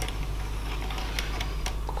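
A few faint plastic clicks and ticks from a Tomytec N-gauge model of a Kanto Railway KiHa 310 diesel railcar as it is fitted onto the track by hand, its wheels being lined up on the rails. A steady low hum runs underneath.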